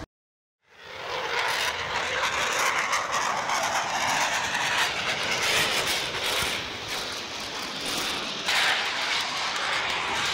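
Jet aircraft engine noise of a display jet flying overhead: a steady rushing sound that fades in after a brief silence and gets a little louder about eight and a half seconds in.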